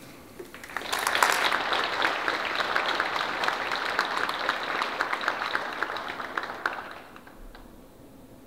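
Audience applauding at the end of a speech. The clapping starts about a second in, holds steady, then dies away about a second before the end.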